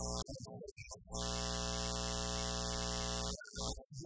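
A man's speaking voice, broken a second in by a steady, loud electronic buzz that holds one unchanging tone for a little over two seconds and then cuts off suddenly, before the voice returns.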